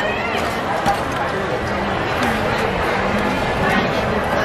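Chatter of several people talking over the general hubbub of a busy market, with a few faint light clicks.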